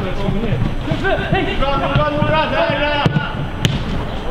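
Football players shouting across the pitch, with two sharp knocks of the ball being struck about three seconds in, half a second apart.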